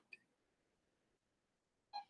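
Near silence: room tone, with one very short sound right at the end.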